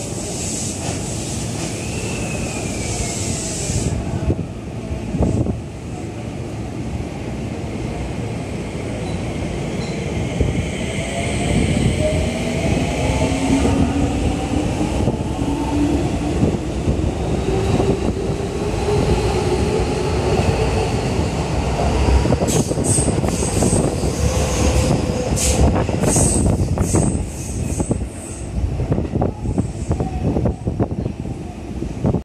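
Keio 5000 series electric train pulling out of the station: a hiss at the start, then its motor whine rising steadily in pitch as it gathers speed. Near the end come a string of sharp clicks from the wheels over rail joints as the cars pass.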